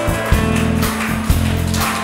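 Live guitar ensemble playing an instrumental passage, plucked guitars over low bass notes struck about twice a second.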